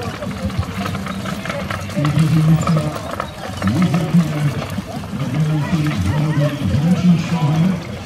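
A man's low voice, with pitches held for about half a second and bending up and down, over steady outdoor background noise.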